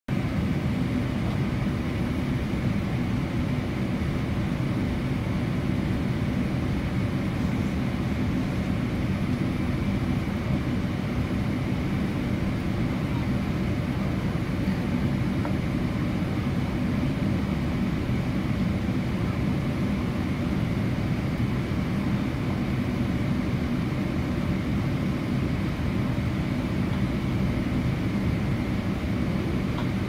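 Steady in-flight cabin noise of a Boeing 787-8 airliner on approach: engine and airflow rumble, heaviest in the low end, with a faint high steady tone above it.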